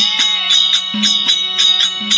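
Therukoothu accompaniment music: a reed wind instrument plays a wavering melody over a steady drone, with a quick, even beat of drum and small cymbal strokes.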